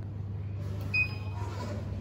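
Lift car's steady low hum, with a single short electronic chime sounding about a second in.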